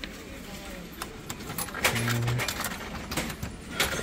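Coins clinking and being pushed into the coin slot of a gashapon capsule-toy machine: a string of short, sharp metallic clicks.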